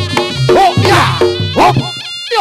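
Accompaniment music for a Ponorogo jathil dance: a buzzy, reedy wind-instrument melody with bending notes over quick drum strokes and a steady low tone.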